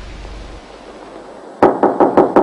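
Knocking on a door: a quick run of sharp raps starting about one and a half seconds in, after low soundtrack hum fades.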